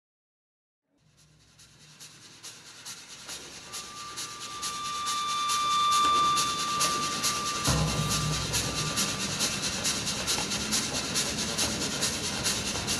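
Rhythmic clatter of a train running on its rails, played as a stage sound effect: it fades in from silence to a steady beat of about three strokes a second. A thin high whistle-like tone is held through the middle, and a deeper rumble joins about two-thirds through.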